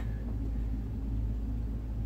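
Steady low rumble and hum of a running motor.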